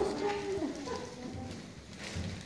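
Low voices trailing off in a large room, fading to quieter background murmur.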